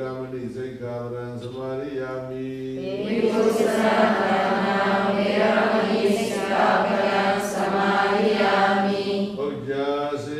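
Buddhist chanting in Pali by a group in unison, at first a single low voice with long held notes, then from about three seconds in many voices together, louder and fuller.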